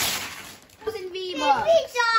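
Wrapping paper being ripped off a large gift box, a brief tearing noise in the first half second. It is followed from about a second in by high-pitched, excited voices.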